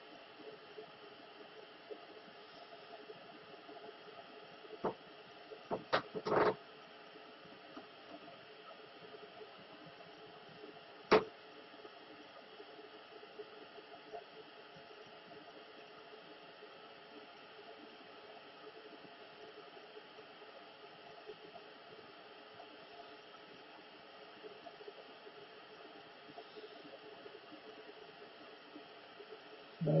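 Steady low hiss with a faint hum, broken by a few sharp clicks: a small cluster about five to six seconds in and one louder click about eleven seconds in.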